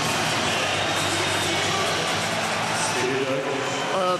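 Ice hockey arena crowd cheering with music over the arena speakers just after a home-team goal. A voice comes in near the end.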